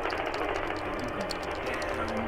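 Rapid, irregular clicking of video-game controller buttons over the sound of a fighting video game playing on a television.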